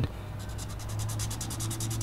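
Felt-tip marker scribbling on paper, pressed down on its side to fill in a solid black patch, in rapid back-and-forth strokes about ten a second.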